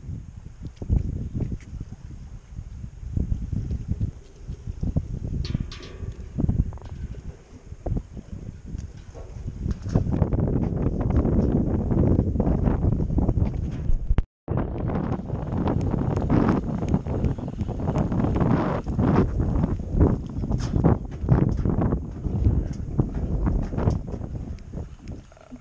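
Wind buffeting a body-worn camera's microphone on an open pier, mixed with knocks and rustles from handling. It grows stronger about ten seconds in, and the sound cuts out for an instant a little past halfway.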